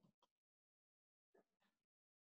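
Near silence, broken by a few faint, brief sounds at the very start and again about a second and a half in, with dead silence between them.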